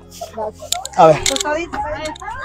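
Mainly speech: a man's voice says "a ver" amid other voices close by, with a couple of brief clicks.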